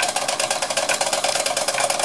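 Small vertical single-cylinder model steam engine running on compressed air, its exhaust beating rapidly and evenly with a mechanical rattle, while oil is run through it.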